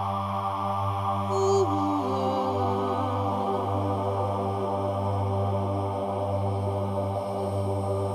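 Meditative background music: a steady low drone with slow, chant-like held notes that step down in pitch about a second and a half in.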